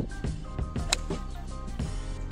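Background music with a steady beat, and one sharp click about a second in: a golf club striking the ball on a tee shot.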